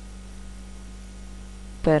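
Steady low electrical hum, mains hum on the recording. A man's voice begins just at the end.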